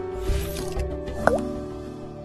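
Intro logo jingle: sustained synth tones with low rumbling swells, and a quick blip that dips and rises in pitch a little over a second in, after which the music fades out.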